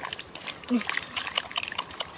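Muddy water sloshing and splashing as a perforated plastic basket is scooped through a shallow mud puddle, with many small wet clicks and squelches. A short vocal exclamation comes about three quarters of a second in.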